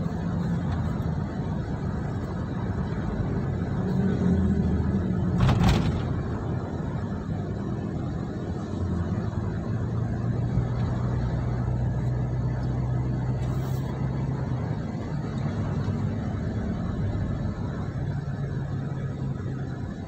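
Road and engine noise heard inside a car cruising on a highway: a steady low drone of engine and tyres, with one sharp knock a little over five seconds in.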